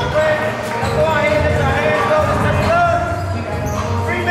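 Indistinct voices over music, with repeated low thuds.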